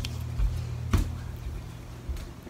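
Handling noise from a phone camera being picked up and moved: low thumps and one sharp knock about a second in, over a steady low hum.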